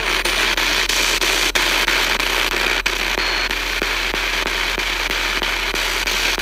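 Spirit box sweeping the AM radio band: loud, steady static broken by regular quick clicks, a few a second, as it steps from station to station.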